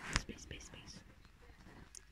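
A child whispering softly, with a sharp click just after the start.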